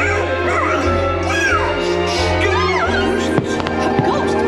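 Fireworks show soundtrack music playing loudly over park speakers, with a voice gliding in pitch over it, and a few sharp firework pops near the end.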